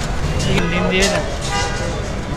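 Busy street ambience: people talking over traffic noise, with a vehicle horn sounding.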